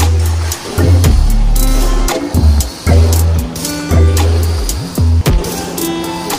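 Background music with a strong bass line and a steady drum beat.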